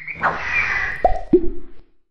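Animated logo-intro sound effects: a rising chirpy swell breaks into a whoosh with a held high tone. Then come two quick downward-swooping plops about a third of a second apart, the second one lower and held briefly, before the sound cuts off abruptly.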